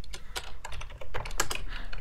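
Computer keyboard typing: a quick, uneven run of key clicks.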